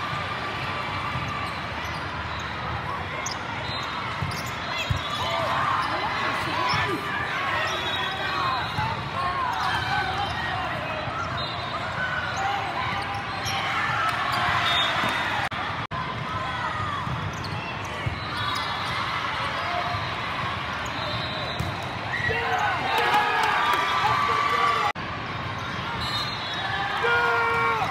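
Indoor volleyball play in a big multi-court hall: the ball being struck and players moving on the court, under a steady din of players' calls and spectator chatter.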